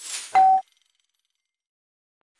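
Editing sound effect: a brief airy whoosh, then a loud, short, bright ding that cuts off abruptly.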